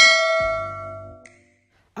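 Notification-bell sound effect of a subscribe-button animation: a single bright bell-like ding that rings out and fades away over about a second and a half, with a low rumble underneath.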